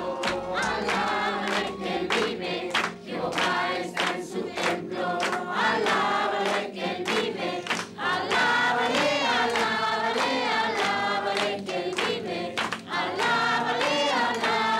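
A church congregation singing a worship song together, many voices at once, with hand claps keeping a steady beat of about two to three a second.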